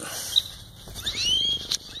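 A bird calling outdoors: a few thin whistled notes sliding upward in pitch, about a second in, over a steady outdoor background hiss.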